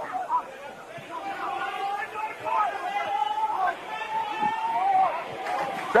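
Voices shouting and calling across a rugby league field, with several long held yells through the middle as play runs toward the try line. The calls grow louder near the end.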